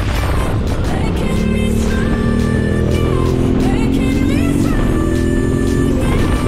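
Background music over a Yamaha Ténéré 700's parallel-twin engine pulling at road speed. The engine's pitch climbs steadily, drops once about three-quarters of the way through, as at an upshift, and climbs again.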